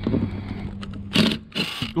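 Ryobi cordless impact driver running on a stainless screw in a metal bracket: a steady motor hum for about a second, then two louder, harsh bursts in the second half.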